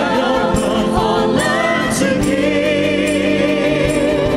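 A vocal group of male and female singers sings a song in harmony into microphones over instrumental backing, the sung notes held with vibrato.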